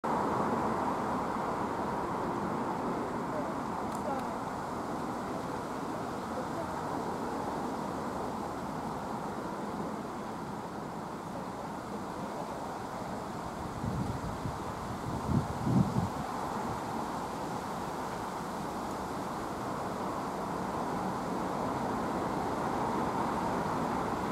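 Steady outdoor background noise, a low rumble and hiss, with a short burst of louder low sounds about fourteen to sixteen seconds in.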